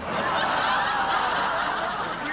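Studio audience laughing together, a steady wash of crowd laughter that eases off near the end.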